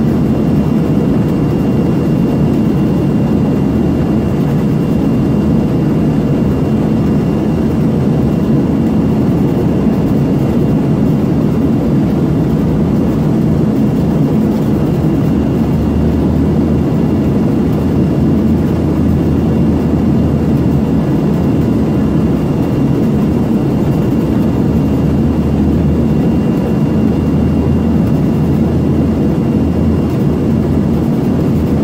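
Steady cabin roar inside an Embraer ERJ-145XR regional jet descending toward landing: rushing airflow and the drone of its two rear-mounted Rolls-Royce AE 3007 turbofans, with a faint steady whine on top. A deeper low hum swells twice in the second half.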